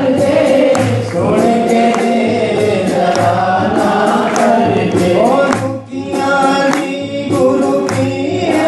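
Hindi devotional bhajan: voices singing a melody together over music with a steady beat.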